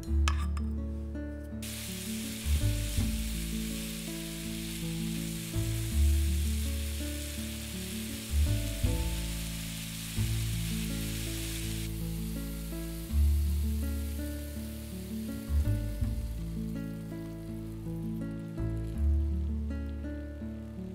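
Diced zucchini, onion, bell pepper and tomato sizzling in oil in a frying pan as they are stirred. The sizzle starts about two seconds in and stops around twelve seconds in.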